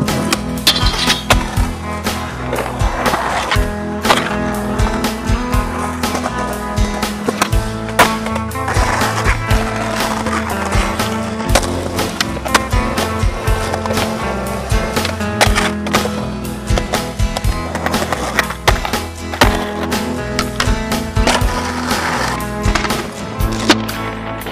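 Skateboarding: wheels rolling and many sharp, irregular clacks of the board against the ground, over a music soundtrack.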